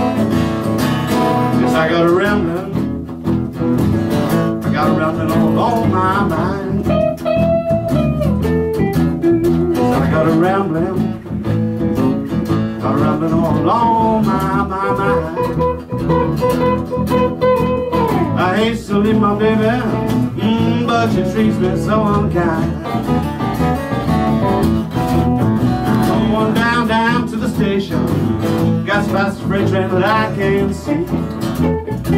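Acoustic guitar playing a blues song live, in a stretch between sung verses, with a bending, wavering melody line over steady guitar accompaniment.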